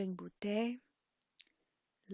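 A voice slowly pronouncing Tibetan syllables, which stops less than a second in, followed by a pause with one faint short click.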